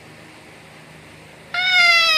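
An eight-month-old baby's high-pitched squeal, starting about one and a half seconds in: one long note that falls slightly in pitch.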